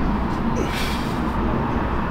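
Steady low rumbling background noise, with a brief hiss a little under a second in.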